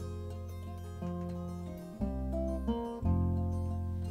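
Acoustic guitar and banjo playing a folk song's instrumental introduction, plucked notes over sustained chords that change about once a second.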